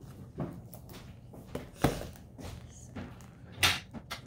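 Scattered light knocks and taps of a book being handled and laid on a wooden table, with a short rustle of its plastic wrapping being picked at near the end.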